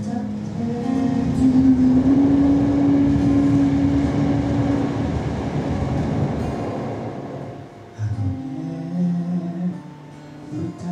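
Acoustic guitar strummed under a long held sung note that ends about five seconds in. The strumming carries on and dies down, and a new melodic phrase starts near the end.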